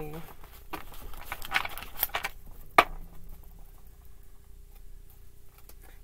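A deck of tarot cards, a little bowl-shaped, being shuffled by hand: bursts of card rustling and sliding in the first couple of seconds, a single sharp tap just before the three-second mark, then quieter handling of the cards.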